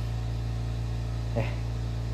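A steady low hum, like a machine or ventilation unit running, with one short spoken word about a second and a half in.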